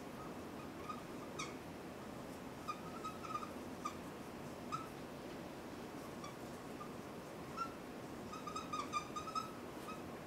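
Dry-erase marker squeaking on a whiteboard as words are written: short, high squeaks scattered through, with a quick run of them near the end.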